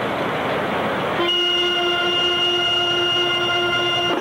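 Marching band brass holding one long sustained chord that comes in about a second in, after a rushing wash of sound, and is cut off at the end.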